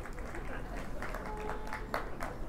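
Scattered audience noise at a low level: a few claps and quiet murmurs, with a faint brief tone about a second in.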